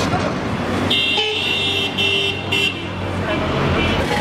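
Vehicle horn honking about a second in: one long blast followed by two short ones, over the steady low rumble of street traffic.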